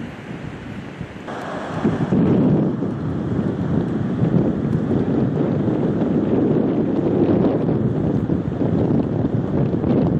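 Wind buffeting the microphone, a dense rumbling noise that grows louder about two seconds in and stays loud.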